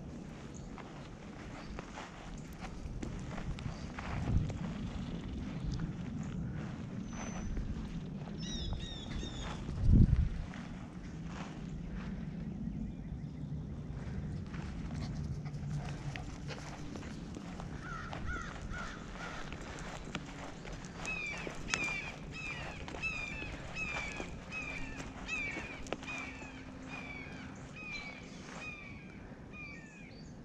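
Outdoor movement on a grass lawn: low rumble and rustling on a body-worn action camera, with one sharp thump about ten seconds in. From about halfway, a songbird repeats a short whistled note roughly twice a second.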